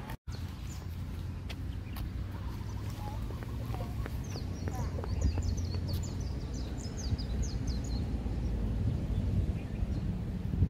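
Outdoor ambience with a steady low rumble. A bird sings a rapid series of short, high chirps from about four to eight seconds in.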